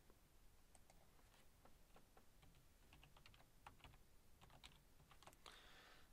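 Faint computer keyboard keystrokes: irregular light clicks, a few per second, as a word is typed.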